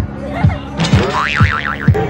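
Playful editor-added background music with a thumping beat about twice a second, with a wobbling, warbling cartoon-style sound effect about a second in.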